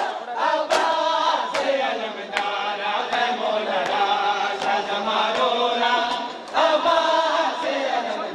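A crowd of mourners chanting a lament in unison, kept in time by rhythmic matam (chest-beating) strikes landing about every 0.8 seconds.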